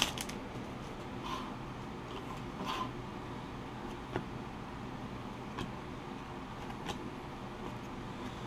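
Hockey trading cards being handled and flipped one at a time by hand, with a faint tap or slide about every one and a half seconds, over a low steady hum.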